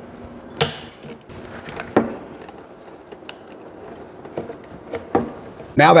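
A few sharp clicks and taps of a screwdriver and plastic circuit breakers being handled in a metal transfer switch box, the loudest about half a second and two seconds in.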